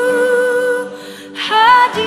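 Woman singing live into a microphone: one long held note that fades out about a second in, a quick breath, then the next phrase begins near the end, over faint steady backing music.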